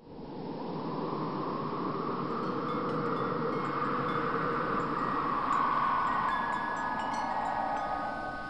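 Wind-like whooshing sound effect with faint chime-like tinkles, accompanying an animated logo intro; it starts suddenly, swells slowly and eases off near the end.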